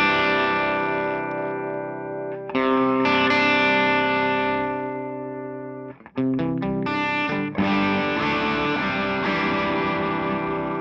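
Electric guitar played through the blue channel of a Suhr Eclipse dual overdrive pedal into an amp, with a distorted tone. Chords are struck and left to ring and fade, a new chord comes about two and a half seconds in, a few quick strums a little after halfway, then a chord is held out.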